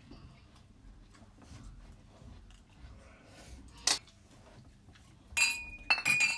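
Glasses clinking together in a toast near the end, the strike ringing on with a bright pitch. Before that, light clicks of cutlery on plates, with one sharp knock about four seconds in.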